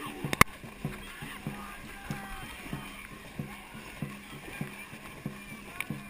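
Dragon boat crew paddling at race pace: a regular thump about every 0.6 s in time with the strokes, over splashing water. A single sharp, loud click comes about half a second in, and faint voices are heard.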